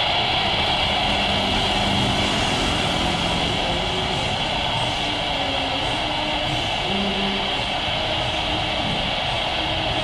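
Airbus A330's twin jet engines at takeoff thrust during its takeoff roll: a steady, loud jet noise with a constant high whine over a low rumble.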